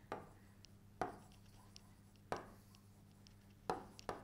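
Faint taps and ticks of a pen stylus on the glass screen of an interactive display while words are handwritten: three sharper knocks, about a second in, past two seconds and near the end, with fainter ticks between.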